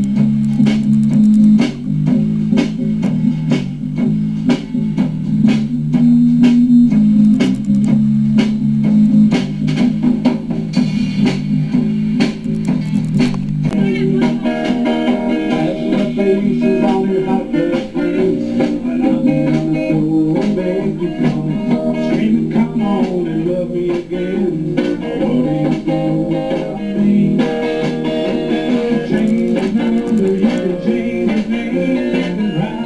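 A small live band playing: guitars and bass guitar over a steady drum-kit beat. About halfway through the sound grows fuller, as higher guitar parts join in.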